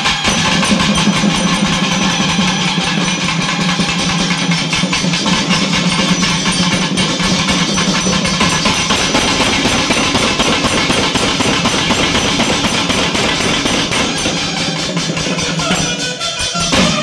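Loud music with fast, continuous drumming.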